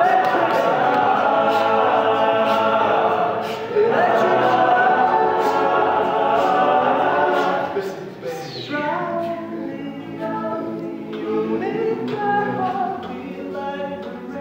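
All-male a cappella group singing in close harmony, a soloist out front over the backing voices. A full, loud passage drops off about eight seconds in to a quieter, sparser section of held chords.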